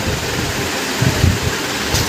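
A steady rushing noise, with a few soft low thumps a little after a second in.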